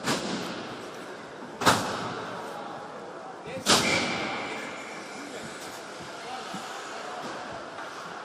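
Three sharp cracks of ice hockey play, puck and sticks striking, about two seconds apart, each echoing through the ice hall over a low murmur of spectators.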